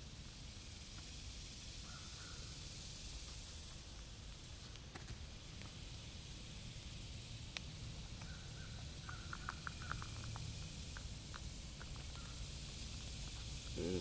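Quiet outdoor background with a steady low rumble and hiss, and a few faint, short clicks, clustered a little past the middle.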